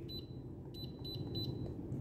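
Midea wired heat pump controller giving a series of short, high key beeps as its buttons are pressed, one beep per press, at irregular intervals.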